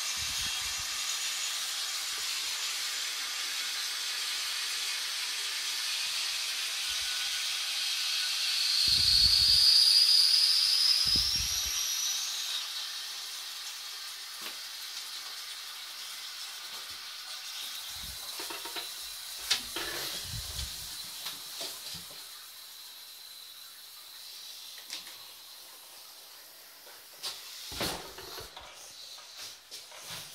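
Royal Venton New Coronet low-level toilet cistern refilling through its ball valve: a steady hiss of incoming water, with a whistle that rises in pitch and is loudest about ten seconds in. The hiss then slowly dies away as the valve closes. A few faint knocks come in the second half.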